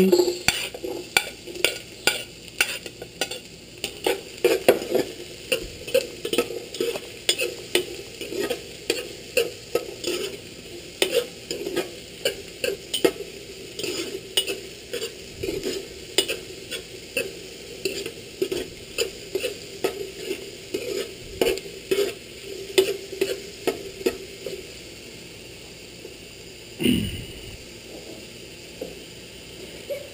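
Chopped onions sizzling in hot oil in a frying pan while a metal spoon stirs them, scraping and tapping the pan a few times a second. The stirring stops about three-quarters of the way through, leaving the steady sizzle.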